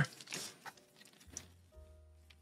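Faint handling of a plastic water bottle, with a couple of small clicks as the cap is worked off. Faint steady tones of background music come in near the end.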